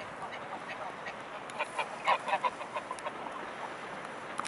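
Greylag geese honking: a quick run of short calls starting about a second and a half in, loudest around two seconds, over a steady background hiss.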